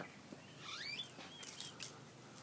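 Faint bird calls: a few short whistled notes that glide up and down, with a couple of light clicks near the end.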